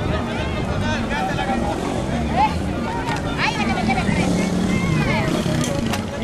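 Crowd of marchers talking and calling out over one another, with motorcycle engines running among them.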